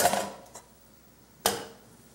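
Two sharp knocks of kitchenware against a metal cooking pot, about a second and a half apart, each with a short ring after it, with a faint click in between.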